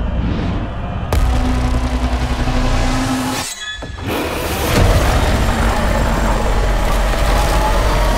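Film trailer soundtrack of dramatic music and sound effects. There is a sudden hit about a second in, then a held low tone, a short dip around three and a half seconds, and a loud swell after it.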